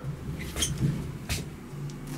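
Elevator cab in motion, giving a low, rough rumble, with two sharp clicks, one about half a second in and one past the middle.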